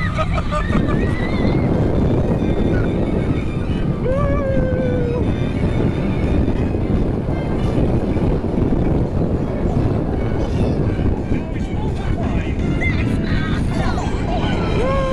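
Incredicoaster roller coaster ride heard from the front seat: a steady rush of wind and the rumble of the train running on its steel track. A rider yells briefly about four seconds in.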